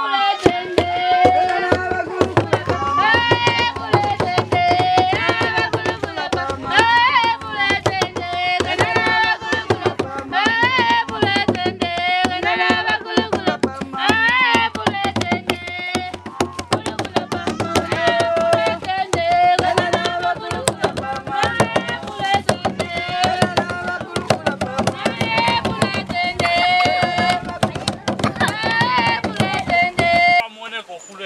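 Tall wooden hand drums beaten in a fast, steady rhythm, with high voices singing over them.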